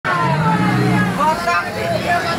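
A vehicle engine running in street traffic, with people's voices over it in words that cannot be made out.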